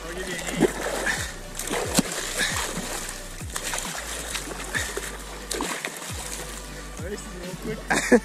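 Water splashing and sloshing at the surface right beside an inflatable tube as a hooked mackerel thrashes on the line, with scattered small knocks.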